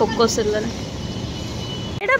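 Road traffic going by: a steady hum of engines and tyres from passing motorcycles and auto-rickshaws, with a faint thin high tone in the second half.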